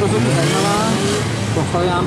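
Suzuki GSX-R 750 sport bike's inline-four engine revving up as the rider accelerates out of a turn between the cones, its pitch rising over the first second.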